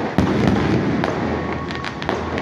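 Fireworks shells bursting: one sharp loud bang just after the start, followed by a few fainter reports over a continuous rumble and crackle of the display.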